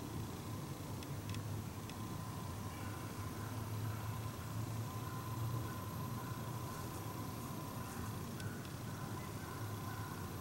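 Faint woodland background: a low steady rumble with hiss and a few light clicks.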